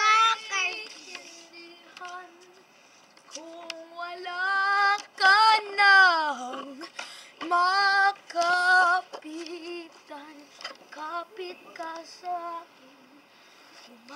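A child singing unaccompanied, in short phrases with long held notes whose pitch wavers, one of them sliding down about six seconds in.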